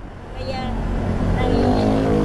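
A motor vehicle passing on the road, its engine note sliding down in pitch as it goes by, over a steady low traffic hum.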